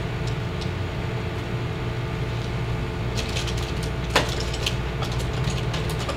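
A steady low hum, with a few small clicks and taps of tools being handled on a worktable starting about three seconds in, the sharpest just after four seconds.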